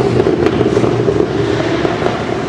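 Open-wheel hillclimb race car engine running loud under hard acceleration as the car approaches, with sharp crackles from the exhaust in the first half second.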